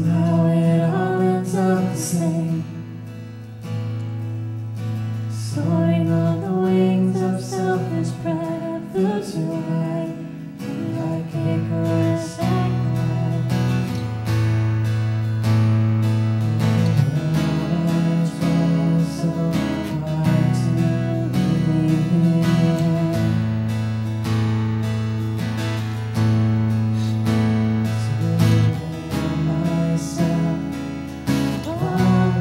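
Contemporary worship band playing a slow song: acoustic guitar strumming over a steady low bass, with a woman singing.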